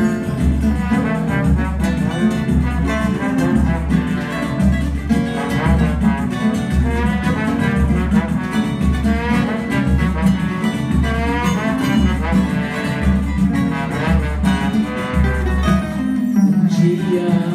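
Live samba band playing an instrumental introduction: a steady low bass pulse about twice a second under a brass melody, with guitar and hand drums.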